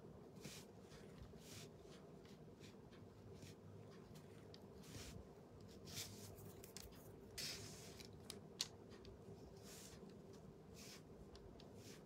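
Near silence with scattered faint rustles of thin decoupage tissue paper being handled and pinched away along its edge, and one brief sharper click a little over two-thirds of the way through.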